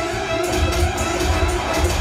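Orchestral stage music: held notes over a pulsing low beat, accompanying a kung fu fight scene.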